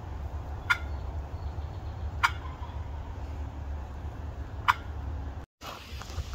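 Wild turkey toms gobbling: three short, sharp gobbles about one and a half to two and a half seconds apart, over a steady low rumble. The sound cuts out briefly near the end.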